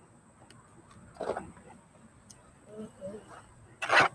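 Mostly quiet outdoor background with faint, distant voices and a few short rustling or handling knocks, the loudest just before the end; no engine is running.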